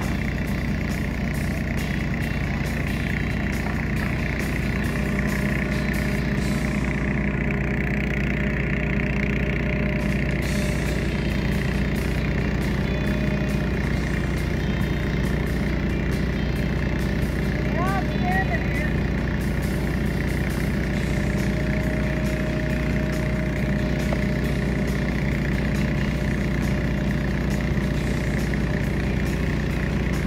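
Diesel engine of heavy construction machinery running steadily at a constant speed, with a deep, even drone.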